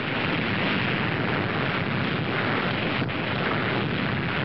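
Steady, dense rushing rumble of a nuclear explosion from archival bomb-test footage, with a faint click about three seconds in.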